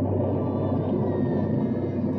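Eerie ambient drone: a steady low hum with a churning, moaning texture, typical of a spooky Halloween soundscape.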